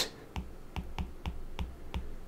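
Stylus nib clicking and tapping on a tablet's glass screen while handwriting, a run of faint light clicks about four a second.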